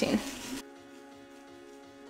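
A woman's voice trailing off over a soft scrubbing of a toothbrush on the painting. About half a second in this cuts off sharply, leaving quiet background music with held notes.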